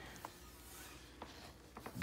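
Quiet room tone with a few faint, small clicks and light rubbing.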